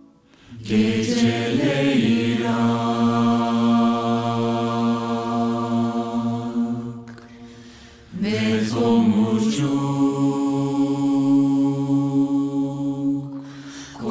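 A cappella vocal ensemble singing wordless, multi-part sustained chords over a low held note: two long chords, the first fading out about seven seconds in and the second entering a second later.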